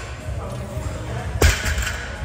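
Loaded barbell with rubber bumper plates set down on the floor during a deadlift rep: one heavy thud about one and a half seconds in, with a short rattle after it.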